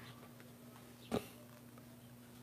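A single short snort of laughter through the nose about a second in, over a faint steady hum.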